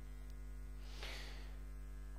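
Steady low electrical mains hum in the sound system during a pause in speech, with a faint brief hiss about a second in.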